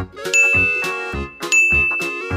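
A bright, high bell-like ding sound effect, struck twice about a second apart and ringing on each time, over upbeat background music with a steady beat.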